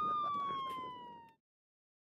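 Police siren holding one steady tone, then dropping in pitch as it fades out about a second and a half in.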